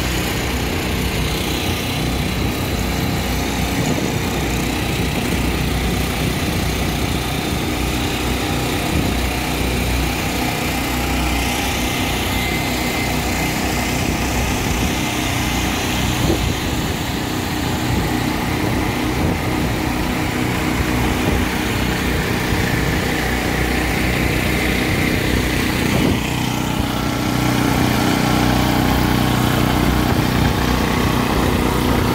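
Small portable generator engines running steadily. Near the end a CAT RP6500 gasoline generator grows louder and its steady hum comes through more clearly.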